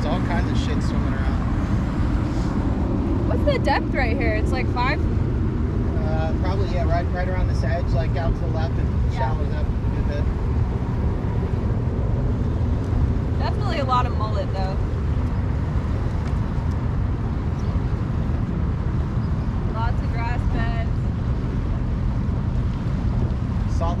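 Boat motor running steadily under way, a continuous low rumble mixed with wind and water noise. A few short stretches of indistinct voices come through it.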